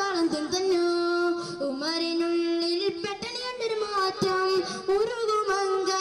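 A boy singing solo into a handheld microphone, holding long steady notes and bending between them in ornamented turns.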